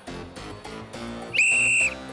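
Background music with short plucked notes, then about a second and a half in one steady, high referee's whistle blast lasting about half a second, the loudest sound, signalling the corner kick.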